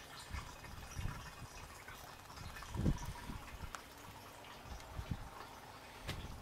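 Faint trickle of a thin stream of oil distilled from waste motor oil, running from a steel outlet pipe into a plastic funnel, with a few soft low thumps.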